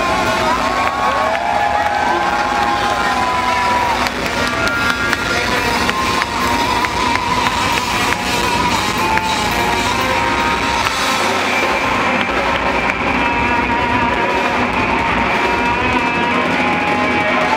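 Live rock band playing electric guitar and drums at loud, steady volume, with a cheering crowd mixed in.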